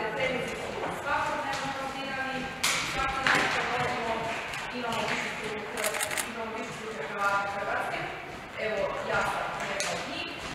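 Voices calling out in a large, echoing training hall, with a few sharp knocks and thuds in between.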